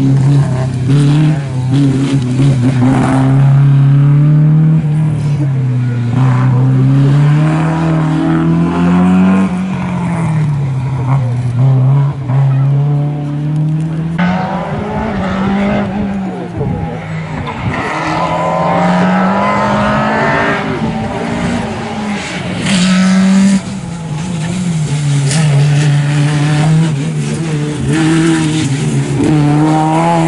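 Rally car engines revving hard and changing gear as cars drive a tight, twisting stage. The engine note keeps rising and falling, and several accelerations and lifts are heard one after another.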